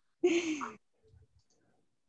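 A person's short, breathy sigh, falling in pitch, near the start.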